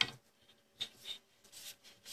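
A long hand screwdriver turning a screw into a wooden dovetail-jig comb. There is a sharp click as the tip seats, then a few short scratchy creaks from the screw turning.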